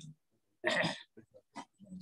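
A person's short, breathy laugh, a single snort-like burst about halfway in, followed by a few faint clicks.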